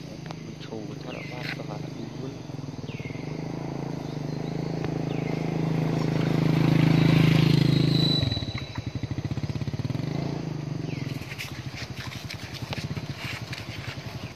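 An engine running nearby, growing louder to a peak about seven seconds in, then dropping suddenly to a rapid, uneven pulsing. Short high falling chirps come every second or two.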